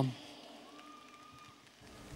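Faint steady background hiss of an open-air stage sound system, with a faint thin tone held for under a second about a second in.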